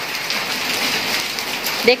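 Heavy rain mixed with small hail falling on concrete and tiled paving and into puddles: a steady, even hiss.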